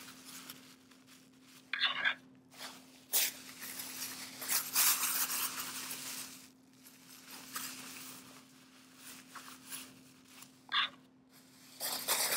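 Plastic grocery bags being crumpled into balls and stuffed into a fuzzy sock: irregular crinkling and rustling, busiest in the middle, over a faint steady hum.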